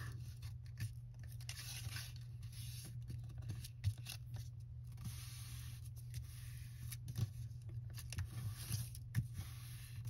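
A sheet of printed paper being folded and creased by hand: soft rustling and rubbing of the paper with a few faint clicks, over a steady low hum.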